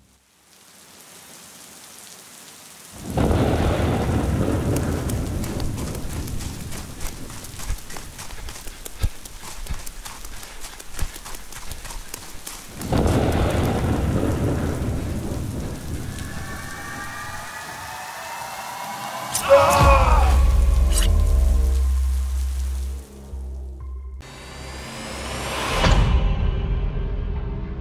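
Heavy rain falling steadily, with a roll of thunder about three seconds in and another near the middle. Later a rising musical swell leads to a sharp hit, then a deep drone as the music builds.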